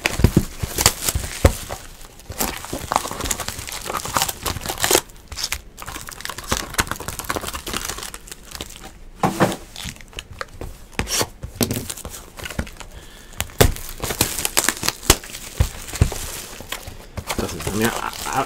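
Clear plastic shrink wrap crinkling and tearing as it is stripped off a sealed cardboard box of trading-card packs: an irregular run of crackles and rips.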